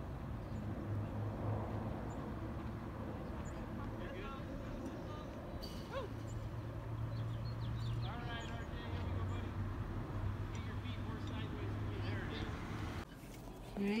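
Distant children's voices and calls carrying from a ball field over a low, steady hum. The sound drops away abruptly near the end.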